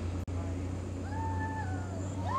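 An animal call held near one pitch for about a second, starting about halfway through, over a steady low hum. There is a momentary dropout in the sound just after the start.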